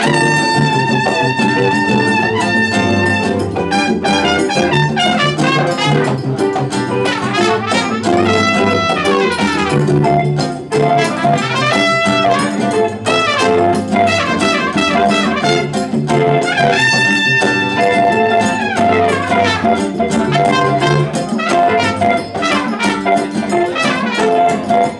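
Live jazz band playing: a trumpet leads with long held notes and pitch bends over congas, acoustic and electric guitars and double bass.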